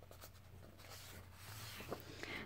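Book pages being flipped: a faint papery rustle, with a slightly louder flick near the end.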